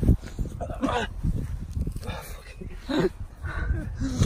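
A man's short grunts and laughter of effort while being hauled up out of a river onto the grassy bank, over a low rumbling noise on the microphone.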